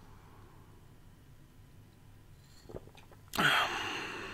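Quiet for about three seconds, then a short, sharp breath out through the mouth after swallowing a sip of beer, preceded by a faint click.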